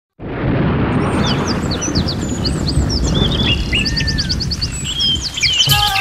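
Many birds chirping and calling over a loud, steady rushing rumble, a nature sound effect opening the song; instrumental music comes in near the end.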